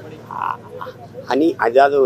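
A man speaking in a raised voice, starting a little over a second in after a short lull with faint background voices.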